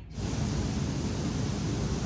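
Steady rushing of water churned by the jets of a hydrotherapy hot tub, starting suddenly just after the start.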